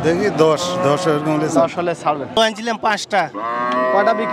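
Cow mooing among cattle; one long, drawn-out moo begins about three seconds in.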